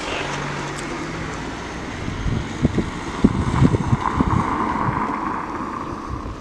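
Wind buffeting an outdoor microphone over a steady background rush, with a run of gusty low thumps from about two seconds in.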